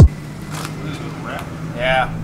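Electronic music cuts off at the very start, leaving quiet outdoor background with a faint steady low hum and a couple of faint rustles. A brief voice sounds near the end.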